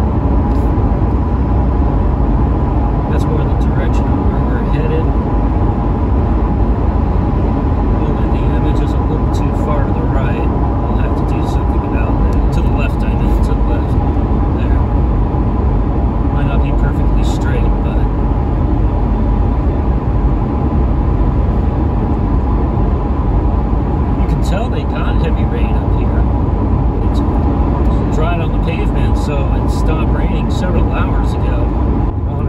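Steady road and engine rumble inside a Ford Crown Victoria's cabin while it cruises at road speed, with a few faint steady tones over the rumble.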